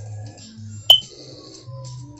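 Cartoon soundtrack played from a TV: light music with a slowly falling high tone, and a sharp, short pop with a bright ringing ping about a second in, a comic sound effect.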